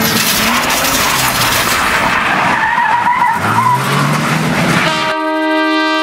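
Car engine revving with tyres skidding, the engine note climbing from about two and a half seconds in. About five seconds in this gives way to a steady held note.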